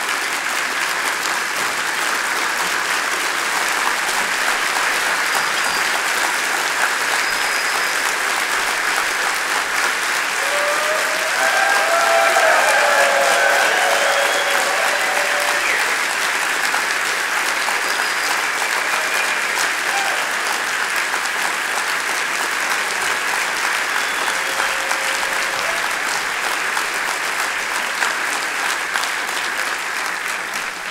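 Large audience applauding, a long steady ovation that swells about twelve seconds in, with a few voices calling out over the clapping around the loudest part.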